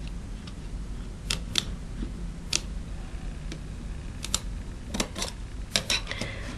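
Light plastic clicks and taps, about a dozen scattered at irregular intervals, from a BlackBerry 9500 handset being handled with its battery cover just released.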